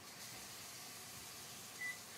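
Steady faint hiss with one short, high-pitched electronic beep near the end.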